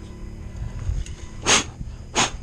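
Two short hissing bursts, about two-thirds of a second apart, over a steady low rumble.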